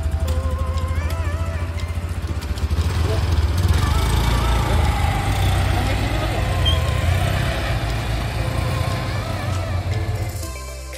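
Small automatic motor scooters running and pulling away, with a deep steady rumble, their sound growing louder from about three seconds in. Background music with a wavering sung melody plays over it.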